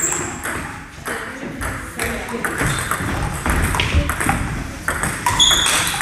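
Table tennis rally: celluloid-type plastic balls struck by rubber-faced paddles and bouncing on the table, a string of sharp clicks several a second.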